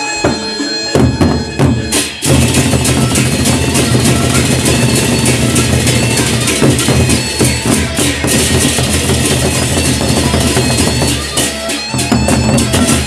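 Gendang beleq ensemble playing: large two-headed barrel drums beaten with sticks and hands, with clashing hand cymbals (ceng-ceng). A few drum strokes come about a second in, then the full ensemble enters loudly with dense cymbal clashing at about two seconds, easing briefly near the end.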